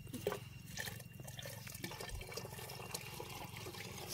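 Faint rustling and small scattered clicks from hands handling dry grass stems and straw, over a steady low hum.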